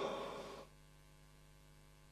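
A pause in speech: the echo of the last word fades out in the first half second, leaving a faint, steady electrical mains hum from the recording.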